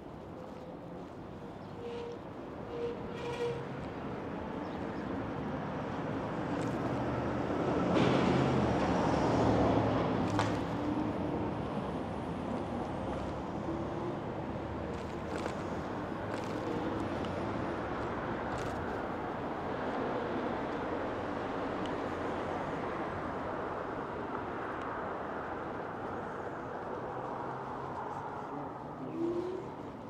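Steady street traffic and wind noise heard while riding along a city street, with one louder vehicle passing that swells about eight seconds in and fades by about eleven seconds.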